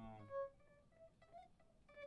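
A guitar played softly: a strummed chord rings out and fades, then a few sparse single picked notes follow, the first and clearest about half a second in.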